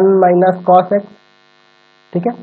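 A man's voice: a drawn-out, steady-pitched hum or vowel followed by a few short syllables, stopping about a second in. After that, only faint steady tones in near silence.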